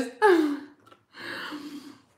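A woman's short voiced sound falling in pitch, then about a second of breathy, whispery exhaling.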